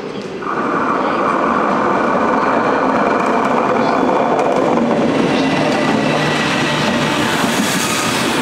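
Electric locomotive 1752 arriving and rolling slowly past at close range with a rake of DB passenger coaches, the wheels running on the rails. About half a second in, a loud steady mid-pitched sound sets in and holds for about four seconds before easing back into the rolling noise.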